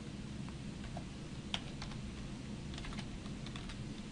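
Typing on a computer keyboard: scattered key clicks, with a quicker run of keystrokes about three seconds in, over a low steady hum.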